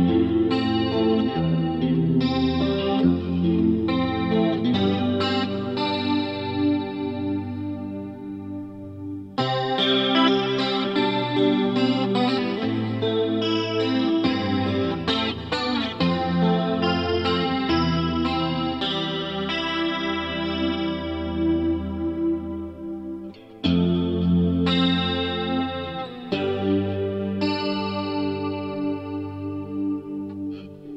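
Instrumental passage of a Japanese visual kei rock recording: electric guitar with chorus effect playing sustained chords that ring and slowly fade, struck anew about nine seconds in and again about three-quarters of the way through.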